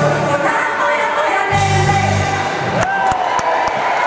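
Live pop band with female voices singing the end of a song; the band stops about three quarters of the way in and crowd cheering and applause begins.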